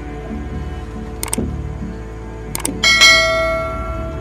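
A dramatic bell-like chime in a TV drama soundtrack, struck once loudly about three seconds in and ringing on as it fades. It comes over a low music bed, after two pairs of sharp clicks.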